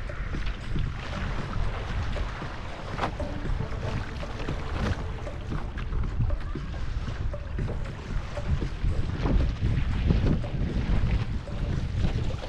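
Wind buffeting the microphone over a steady rush of water along a paddled outrigger canoe's hull in choppy sea, with occasional sharper splashes.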